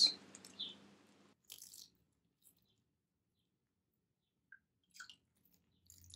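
Milk syrup poured from a metal ladle onto baked baklava: faint, soft wet splashes and drips, a few scattered ones with quiet between.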